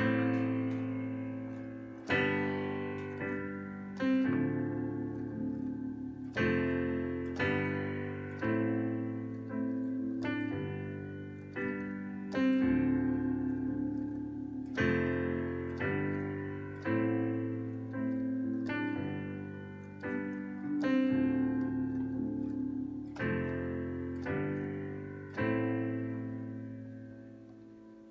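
Digital piano playing a slow R&B chord progression in both hands: A minor, G major, D minor 7, F major, G major and back to A minor, with single root notes in the left hand. A new chord is struck about every two seconds and rings and fades under the next, with a few lighter restrikes in between.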